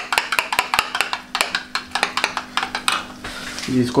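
Metal spoon clinking quickly against a small ceramic bowl, about six or seven taps a second, as arrowroot powder is stirred into milk; the stirring stops about three seconds in.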